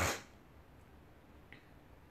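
Quiet pause: a brief breathy noise right at the start, then faint room tone with a single faint click about one and a half seconds in.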